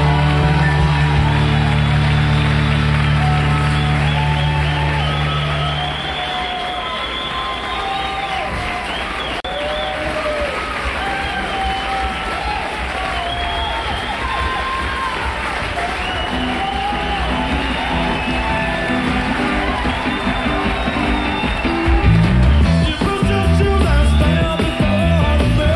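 A live rock band holds a final chord that ends about six seconds in, followed by audience applause and cheering. Near the end the band kicks into the next song with bass and drums.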